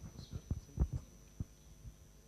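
A few dull, irregularly spaced low thumps and knocks, the loudest just under a second in.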